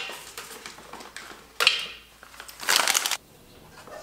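Blanched whole almonds poured from two plastic packets into a Thermomix's stainless-steel mixing bowl, in two rushes about a second apart, with rustling of the packets between.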